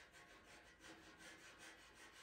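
Black pastel pencil rubbed on its side across pastel paper, faint quick back-and-forth strokes several a second, darkening a dark area of the drawing.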